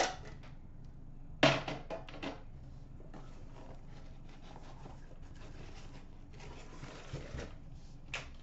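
Handling of a small cardboard hockey card box. A sharp knock about a second and a half in is followed by a few lighter clacks, then the rustle and scrape of cardboard flaps and packaging as the box is opened and the pack slid out.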